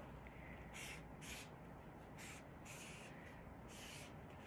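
Faint scratching of a felt-tip marker on paper, several short strokes, as the numeral seven is traced on a worksheet.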